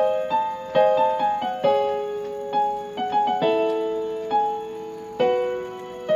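Instrumental keyboard music in a piano sound, as in a karaoke backing track between sung lines: a slow melody over chords, with notes struck roughly once a second and dying away. There is no singing.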